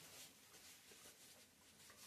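Near silence: faint rustling of a paper towel as hands are wiped dry.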